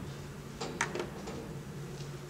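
Quiet room tone: a low steady hum with a couple of faint short clicks a little over half a second in.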